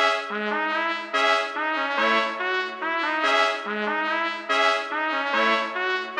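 Sampled gypsy trumpet from the Balkan Ethnic Orchestra Kontakt library playing a looped chord progression in C-sharp minor at 143 BPM. It plays simple triads with the middle note raised an octave and short filler notes between them, the notes changing every half second or so.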